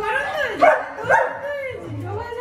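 Siberian husky howling, its pitch gliding up and down in a voice-like run, with two louder cries around the middle.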